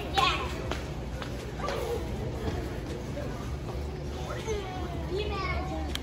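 Children's voices and scattered speech in the background of a large warehouse store, over a steady low hum.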